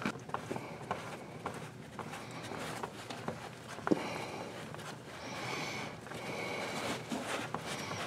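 Spin-on oil filter being turned loose by hand in a tight space against the exhaust headers: scattered small clicks and knocks of metal, one louder knock about four seconds in.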